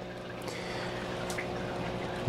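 Steady trickle of running water, with a faint even hum under it.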